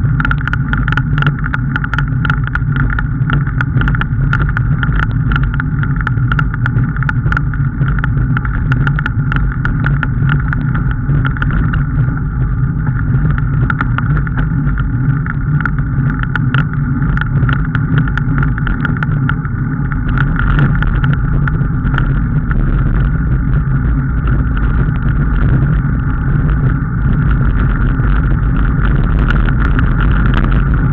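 Steady rumbling travel noise of a ride along a paved road, with many small rattling clicks throughout, growing slightly louder after about twenty seconds.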